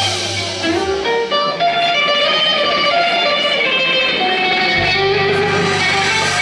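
Live rock band playing, electric guitar to the fore with held lead notes; the low bass drops out about a second in and comes back in near the end.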